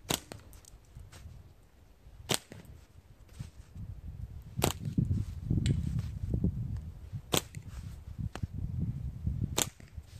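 A slingshot with rubber tubing shot in quick succession: five sharp cracks about two and a half seconds apart, a pace of about 20 shots a minute. A low rumble runs under the later shots.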